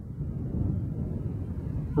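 Low, fluctuating rumble of wind buffeting the microphone, with no distinct tones.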